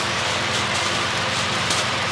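A steady hiss of background noise, with a faint crinkle of a thin plastic wrapping bag being handled near the end.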